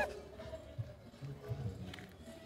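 A pause in conversation. A man's loud exclamation or laugh cuts off at the very start, then only faint low murmurs remain under faint background music.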